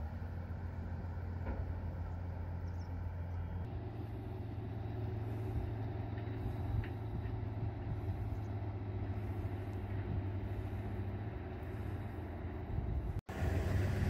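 Steady low outdoor background rumble with no distinct events. It shifts in texture a few seconds in and drops out briefly just before the end.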